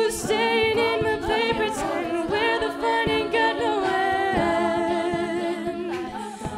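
All-female a cappella group singing in several-part harmony with held chords, while vocal percussion (beatboxing) marks a beat underneath with short, sharp hits.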